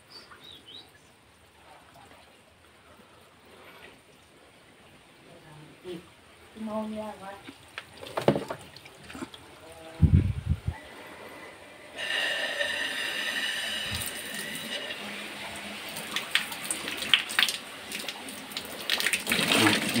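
Water running from a hose into a black plastic bucket, starting suddenly about twelve seconds in and continuing steadily, as the scrubbed bucket is rinsed out. A single low thump comes shortly before the water starts.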